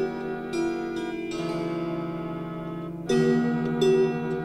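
Slow, medieval-style harp music: plucked notes left to ring over one another, with new notes about half a second in and near one and a half seconds, and a louder chord just after three seconds.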